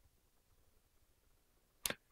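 Near silence: room tone picked up by a handheld microphone, with one short sharp hiss near the end.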